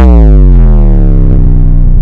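Extremely loud, distorted, bass-heavy synthesizer tone sliding slowly downward in pitch, then cutting off abruptly: an ear-rape style meme sound effect edited into the video.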